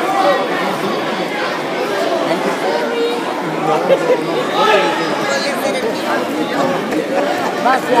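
Crowd of spectators chattering in a large hall: many overlapping voices at a steady level, with no single voice standing out.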